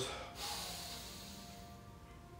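A man drawing a long, deep breath in through his nose: a hiss that starts about a third of a second in and fades away over the next second.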